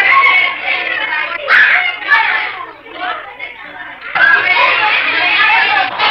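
Overlapping, indistinct chatter of children's voices. The chatter dips to a quieter murmur a few seconds in, then comes back suddenly at full level about four seconds in.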